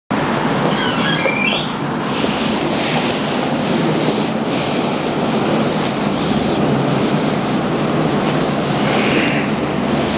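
A steady, loud rushing noise with no distinct events, and a brief run of quick high chirps about a second in.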